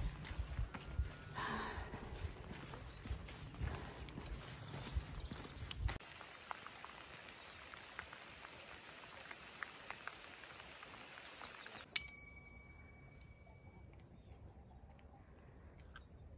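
Low wind rumble and rustling against the microphone with small ticks, then after a cut a fainter outdoor hiss. About twelve seconds in, a single bright bell-like ding rings out and fades over about two seconds.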